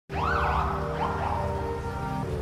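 A siren wails over a dark intro music track with sustained tones and a steady low beat. It starts abruptly and rises in pitch twice, just after the start and again about a second in.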